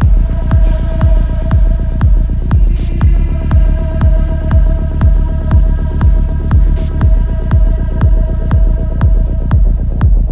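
Electronic psychill music: a steady kick drum and deep bass beat under a held synth note.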